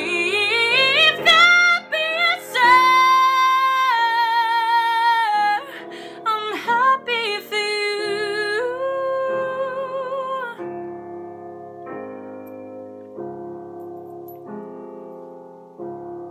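A woman's solo voice singing a pop ballad over piano accompaniment, climbing to long held high notes with vibrato. About ten seconds in the voice stops and the piano chords carry on alone.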